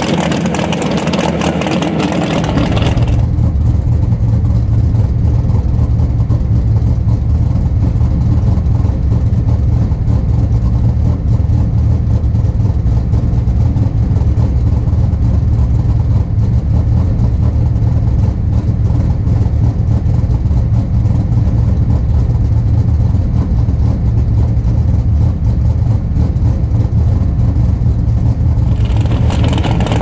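A Pro Mod 1967 Mustang drag car's V8 running at a steady speed, without revving. From about three seconds in until near the end it is heard from inside the cockpit, duller and deeper.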